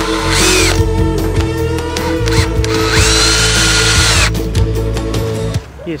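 Makita cordless drill-driver running in two bursts, a short one just after the start and a longer one of over a second past the middle, each speeding up and winding down as it drives screws into wood to fasten a log bird feeder to its post. Guitar background music plays underneath and stops near the end.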